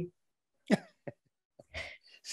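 A man laughing briefly: three short bursts of chuckling with quiet gaps between them.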